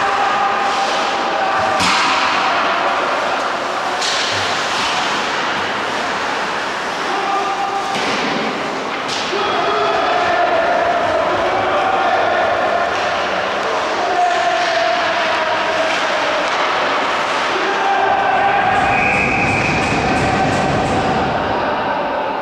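Ice hockey play in an indoor rink: sharp knocks of puck and sticks against the boards every few seconds over steady rink noise, with players' shouts, all echoing in the large hall.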